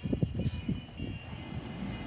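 Distant International Heil Durapack 5000 rear-loader garbage truck running, heard under gusts of wind rumbling on the microphone.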